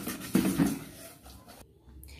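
Silicone spatula stirring and scraping a sugary passion fruit pulp mixture around a saucepan, with two louder strokes about half a second in, then quieter stirring.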